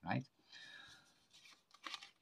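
A deck of playing cards handled on a card mat: a faint card slide, then a few light clicks and a sharper click near the end as the packet is gripped and picked up.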